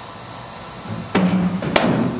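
A cricket ball thrown with a sidearm ball-thrower and played with a bat: two sharp knocks about half a second apart, a little past halfway through.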